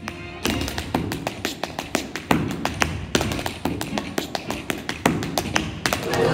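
Tap shoes striking a stage floor in a quick, uneven rhythm of sharp taps, with music underneath.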